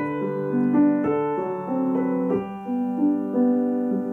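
Piano playing a slow, gentle nocturne: a melody over sustained notes, with new notes struck every half-second or so and each left ringing.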